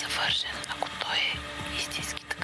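Whispered speech: a quiet, breathy conversation in low voices.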